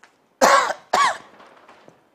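A man coughs twice in quick succession, about half a second apart, the second cough shorter.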